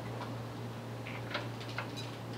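Quiet room tone with a steady low hum and a few faint, short clicks and taps from about a second in.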